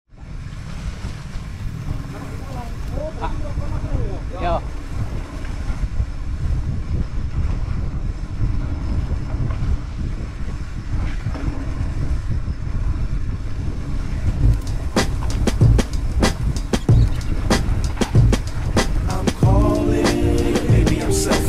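Wind rumbling on the microphone of a mountain bike's rider-mounted camera, with the tyres on a dirt single track. From about two-thirds of the way in, a fast run of clattering knocks as the bike rattles over bumps. Music comes in near the end.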